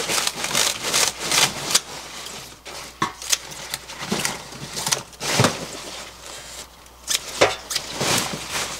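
Kitchen scissors snipping through the leafy green tops of large green onions (daepa), with the crisp rustle of the cut leaves being handled by gloved hands in a stainless steel sink. The snips come irregularly, several sharp ones spread across the stretch.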